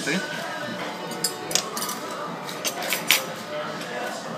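Half a dozen sharp clinks of cutlery and crockery, the loudest about three seconds in, over a steady bed of background music and voices.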